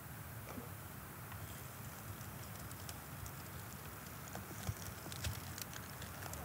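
Faint light crackles and rustles of dry leaf litter over a low, quiet woodland background, with the crackles coming more often in the last two seconds.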